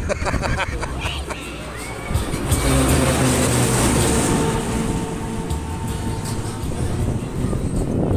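A short laugh, then wind and a steady mechanical hum that grows louder about two and a half seconds in as the car of a 1958 Eli Bridge Ferris wheel sweeps down past the base of the wheel.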